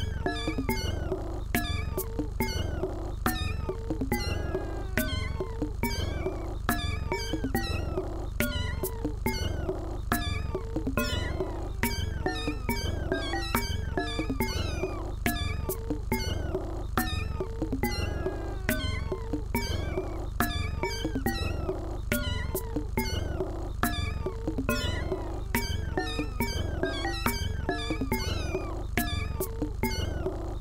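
Electronic music track built on cat meows: meow sounds gliding up and down in pitch over a steady beat of sharp clicks and a continuous deep bass.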